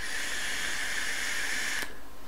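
A vape being fired during a long draw through a rebuildable atomizer: a steady hiss of air and coil sizzle with a faint whistling tone. It stops abruptly just before the end.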